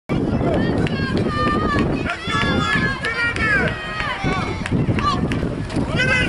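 Several voices shouting and calling out over one another, high-pitched and unintelligible, from spectators and coaches at a youth football game, with a steady low outdoor noise underneath.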